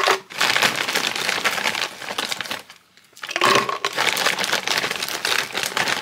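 Plastic bag of frozen strawberry and banana pieces crinkling as a hand rummages in it. The crinkling comes in two spells of about three seconds each, with a short pause about three seconds in.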